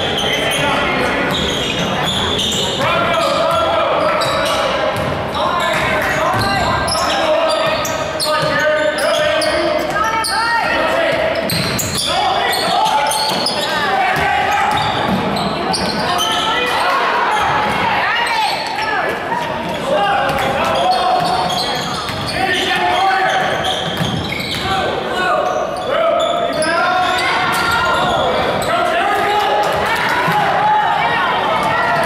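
Basketball being dribbled on a hardwood gym floor, with repeated bounces, under constant voices of players and spectators calling out, in a large echoing gymnasium.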